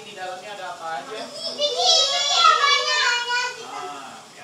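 Young children's voices in a classroom, several talking and calling out over each other, with a loud, high-pitched child's call in the middle that falls in pitch.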